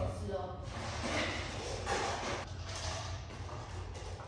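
Faint, distant talking, then a few short scuffs and knocks of someone moving about the room, over a steady low hum.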